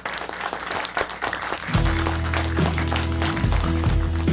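Applause, then about two seconds in a band starts playing, with sustained low bass notes and chords.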